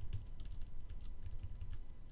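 Computer keyboard arrow keys being pressed, a quick, irregular run of light key clicks as the spreadsheet cell cursor is moved from cell to cell.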